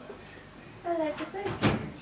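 A single short knock about one and a half seconds in, after a faint, soft voice sound about a second in.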